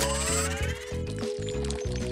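Background music with a steady beat and sustained notes.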